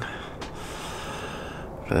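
A man breathing out heavily close to the microphone, a steady breathy hiss lasting nearly two seconds, with a small click about half a second in.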